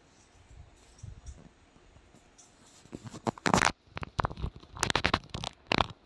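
Faint low rumble, then from about three seconds in a series of loud, irregular scratching and rubbing bursts close to the microphone, like a phone being handled.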